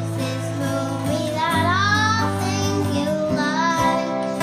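Acoustic guitars playing a song, with a child's voice singing a line about a second and a half in and another shorter line near the end.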